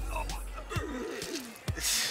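Cartoon fight soundtrack: a man's voice speaking over background music, with a short burst of noise as a sound effect near the end.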